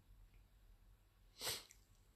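Near silence, broken once about one and a half seconds in by a short, sharp breath, a brief hiss like a quick sniff or intake of air.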